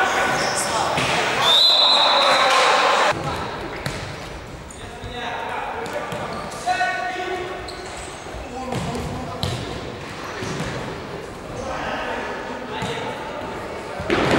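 Futsal game in an echoing sports hall: shouting players' voices, a short high whistle about two seconds in, and the occasional thud of the ball being kicked and bouncing on the wooden floor.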